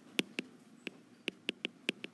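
A stylus tapping and clicking on an iPad's glass screen while handwriting, about seven sharp, irregularly spaced clicks.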